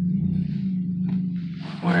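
Steady low drone of a car's engine and road noise heard inside the cabin while driving. A man's voice starts near the end.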